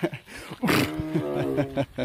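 A tiger vocalizing: one drawn-out call at a steady pitch, lasting about a second, starting just over half a second in.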